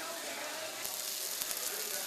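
Ostrich meat and its sauce sizzling on a hot serving plate: a steady hiss, with small crackling pops from about a second in.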